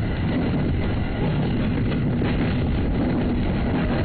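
JR 209 series electric commuter train running along the track, heard from just behind the driver's cab: a steady running rumble of motors and wheels on rail.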